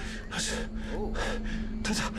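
A person breathing hard in a quick series of short, breathy gasps, with a faint steady hum underneath.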